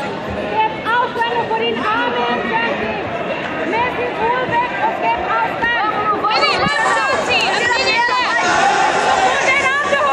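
Voices of a crowd: many people talking over one another, with louder shouted calls breaking through from about six and a half seconds in.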